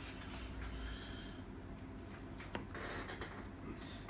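Faint scraping of a table knife spreading Nutella over soft bread, the spread stiff from the cold and hard to spread, with one light click about two and a half seconds in.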